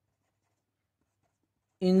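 Very faint scratching of a pen writing on paper.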